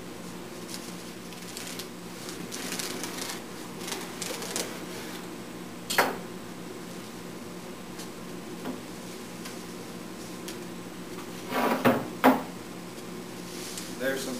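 Veneer saw rasping through thin wood veneer along a straightedge in a few short strokes. A sharp knock comes about six seconds in, and a couple of louder clatters near the end as the cut veneer strips are handled.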